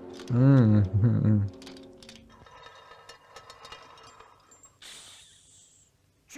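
A man's voice gives a short, loud exclamation with rising and falling pitch, lasting about a second. After it comes faint cartoon soundtrack music with a few small clicks.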